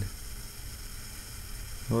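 Steady low hiss with a faint hum: room tone and recording noise, with no distinct sound event.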